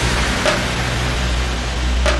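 Hands-up dance music in a breakdown: the beat has dropped out, leaving a steady deep bass and a wash of white noise, with a short bright hit about half a second in.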